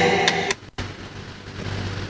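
A voice trails off, the audio cuts out for a moment as the sound card's pitch-bend voice effect is switched on, then a faint steady hiss from the microphone and sound card.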